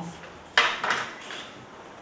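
A brief clatter of small hard objects clinking, starting about half a second in and dying away within half a second, then low room tone.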